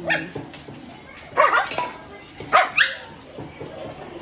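A dog barking: one short bark at the start, then two louder bursts of two or three barks each, about a second apart, in the middle.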